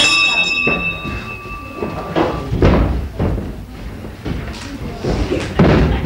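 A wrestling ring bell struck once, ringing for about two seconds as the round gets under way, followed by three heavy thuds of bodies hitting the ring canvas.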